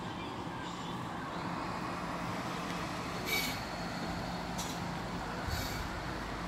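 Steady engine noise of construction machinery running, with a low hum throughout. A few short, sharp sounds break through, about halfway in and again near the end.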